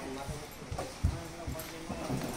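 Cardboard boxes of mangoes being set down and stacked on a tiled floor: a series of about five dull knocks, the loudest a little past a second in, with voices in the background.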